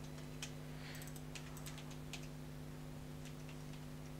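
Faint computer keyboard typing: scattered, irregular keystrokes over a steady low electrical hum.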